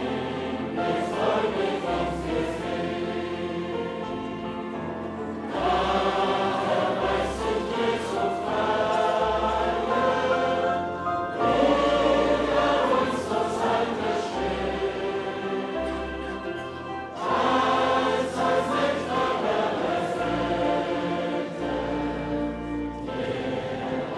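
A large congregation singing a hymn together, many voices in long phrases with short breaks between them, over a low bass accompaniment.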